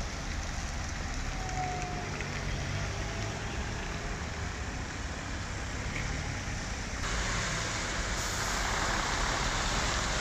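Slow traffic on a wet road: car engines running and tyres hissing on the rain-soaked asphalt. About seven seconds in the sound jumps abruptly to a louder hiss, with a coach bus's engine among the traffic.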